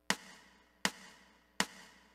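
Count-off clicks at a steady tempo: three sharp, even clicks about three-quarters of a second apart, counting in a play-along piano accompaniment track.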